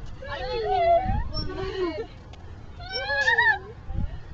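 A child's high-pitched, wordless squeals: two drawn-out calls sliding up and down in pitch, about two and a half seconds apart, with low rumbles of wind on the microphone between them.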